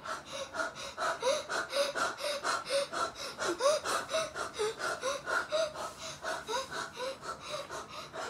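Rapid rhythmic breathing, about four to five breaths a second, with short squeaky voiced sounds on many of them.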